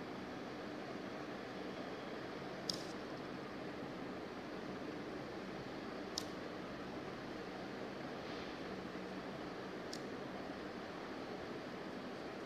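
Steady room hiss with a faint hum, broken by three brief, sharp clicks spaced a few seconds apart.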